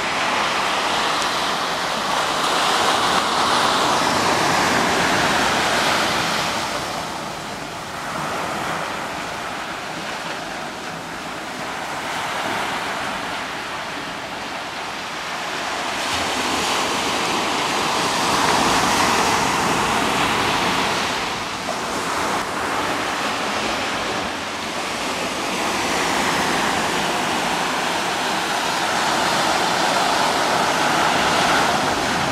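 Ocean surf breaking and washing up a sandy beach around rocks, a continuous rushing that swells louder and fades again several times, each swell lasting a few seconds.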